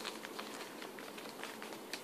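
Wrapping paper being folded by hand around a flat gift, giving faint, scattered crackles and ticks.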